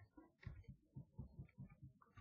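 Faint, irregular soft clicks of a computer mouse, several a second, over near silence.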